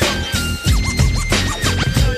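West Coast G-funk hip hop beat with a steady drum pattern, overlaid by turntable scratching heard as quick repeated pitch sweeps, while a high synth line holds long notes that step up and then back down.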